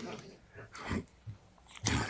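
Quiet, breathy chuckling in a lecture room, with a louder breathy burst near the end.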